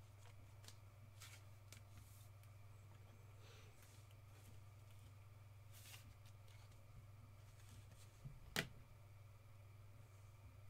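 Faint handling of trading cards and a clear plastic card holder: soft rustles and small clicks, with one sharper click about eight and a half seconds in, over a steady low hum.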